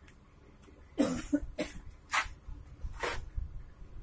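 A person coughing four times, short sharp coughs spread over about two seconds.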